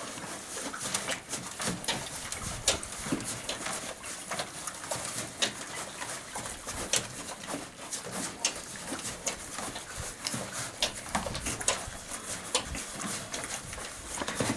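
Horses chewing grain: a run of irregular clicks and crunches from their chewing.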